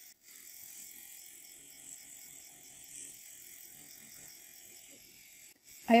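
Faint steady buzz of a Deminuage NanoPen Lux, a rechargeable motorized microneedling pen, running on its lightest (blue) setting with its needle tip pressed against the skin of the face.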